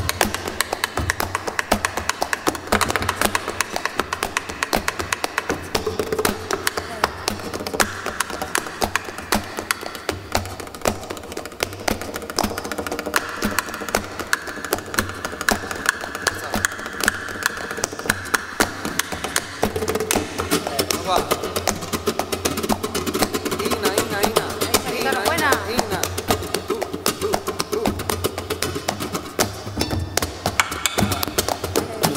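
Live flamenco alegrías: a flamenco guitar played against a dense, continuous rhythm of sharp handclaps (palmas) and taps.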